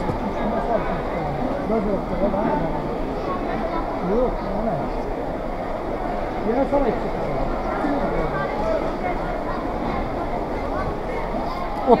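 Indistinct chatter of people talking around market fruit stalls, a steady hubbub of voices with no single sound standing out.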